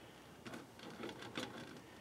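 Faint, scattered light clicks and rustles of handling, a hand and the camera moving around a still machine, with low room tone between them.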